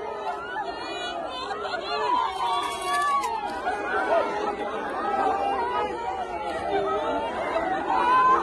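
A large crowd of many voices talking and calling out over one another.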